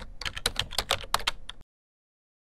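Computer keyboard typing: a quick run of keystroke clicks that stops about a second and a half in.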